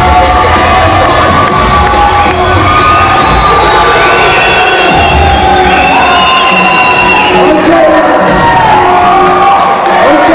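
A crowd cheering over loud music.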